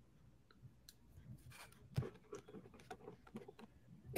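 Near silence: quiet room tone with a few faint, scattered clicks, the sharpest about two seconds in.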